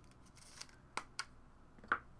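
A few light clicks and taps from hands handling trading cards and hard plastic card holders on a table, the loudest just before the end.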